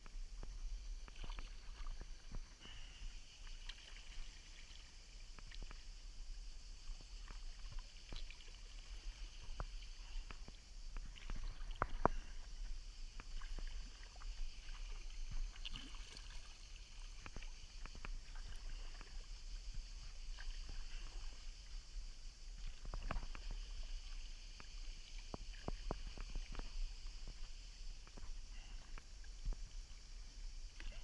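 Sea kayak paddle strokes: the blade dipping into calm salt water, with small splashes and drips at irregular intervals and a sharper splash about twelve seconds in.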